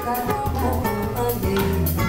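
Live samba band playing: electric bass holding low notes under plucked cavaquinho and a drum kit keeping a steady beat.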